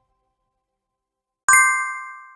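Silence, then about one and a half seconds in a single ding: a notification-bell sound effect for the end screen's bell icon being clicked. It rings with several bright tones at once and fades.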